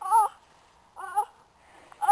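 Two short, high-pitched vocal cries from a person, wavering up and down in pitch, about a second apart.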